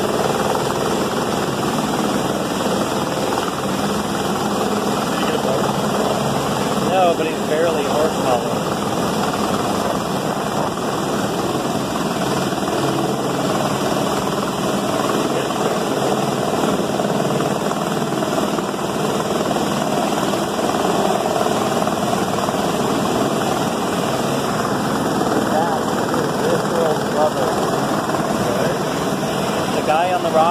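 Steady roar of a flash-flooded desert creek rushing over rocks, mixed with the running rotor and engine of a rescue helicopter hovering over the canyon. Faint voices come through about seven seconds in and again near the end.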